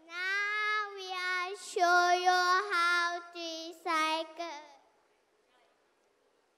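A single child's voice singing a short phrase of held, high notes with brief breaks between them, stopping about five seconds in.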